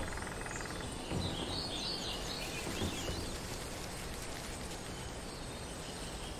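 Forest ambience: a steady background hiss with birds chirping, a brief rapid trill at the start, and two soft low thumps about one and three seconds in.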